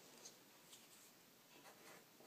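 Faint pencil writing on paper: a few short scratchy strokes.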